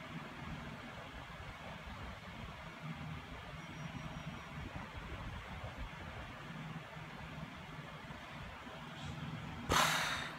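Low, steady background rumble, with a brief loud thump about a quarter of a second before the end.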